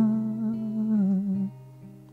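A man humming a held low note over an acoustic guitar chord left ringing, the sound fading away and dropping off about a second and a half in.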